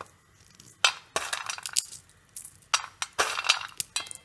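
Peanuts rattling and clinking against a steel plate as a hand stirs through them, in several short irregular bursts.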